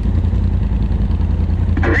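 Side-by-side UTV engine idling, a steady low rumble that doesn't change in pitch. A voice comes in near the end.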